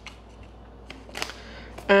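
Tarot card being drawn from the deck: a faint, brief rustle of card stock with a couple of light clicks about a second in, over a low steady hum.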